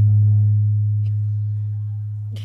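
A loud, steady low tone, like a hum, peaking at the start and then slowly fading.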